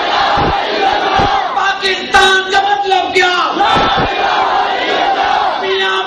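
A large crowd of men shouting a political slogan back in unison in answer to a leader's call. They give a few long, drawn-out calls.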